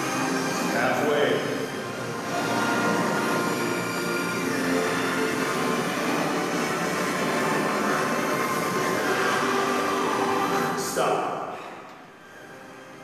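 Background music: sustained electronic tones with slow rising and falling sweeps, steady and loud, dropping off sharply about eleven seconds in.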